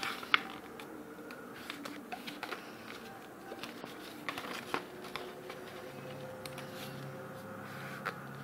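A sheet of A4 paper being folded in half and creased by hand on a table: light rustling and scattered small taps, with one sharp click just after the start.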